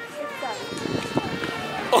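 Indistinct voices of people outdoors, with a few light knocks.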